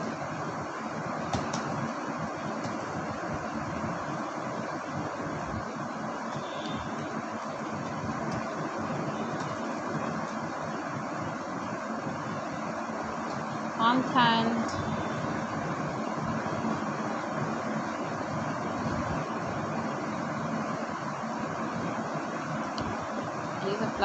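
Steady background noise, an even hiss like a fan or distant traffic, with one brief pitched sound about fourteen seconds in.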